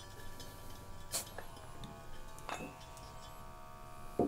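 Faint light metal clinks, about three, as a brass gas regulator is unscrewed from a calibration gas cylinder, the metal ringing briefly after the clinks.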